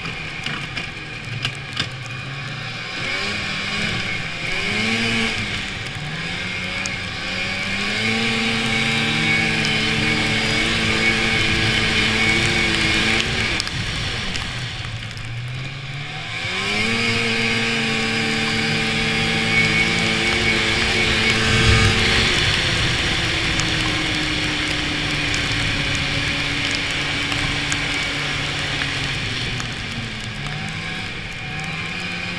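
1993 Polaris Indy 340 snowmobile's two-stroke engine under way, with a steady hiss over it. It picks up speed and holds a steady pitch, drops off sharply about halfway through and climbs back up, then settles to a lower steady pitch for the last several seconds.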